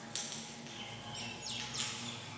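Birds chirping in the background: a short high call just after the start, then two quick falling chirps near the end.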